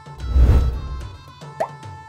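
Background music with a loud, deep transition sound effect that swells and fades within about a second, shortly after the start.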